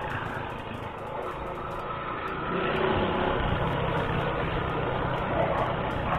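Motorcycle engine running steadily while riding, mixed with road and wind noise picked up by an action camera; it gets a little louder about two and a half seconds in.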